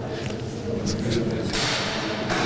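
Several people talking over one another in a large room, with no single voice standing out. About one and a half seconds in, a louder rushing noise joins the chatter.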